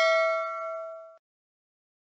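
Notification-bell chime sound effect of a subscribe-button animation, ringing out in several steady tones that fade and then cut off suddenly a little over a second in.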